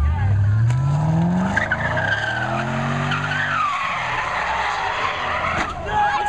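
Car sliding sideways on pavement with its tires squealing, the engine revving up over the first second and a half and again shortly after, rising and then falling in pitch.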